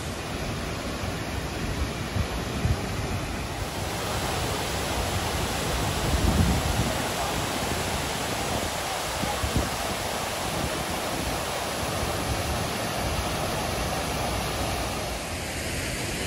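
Large cascade fountain: a steady rush of water pouring down its tiers.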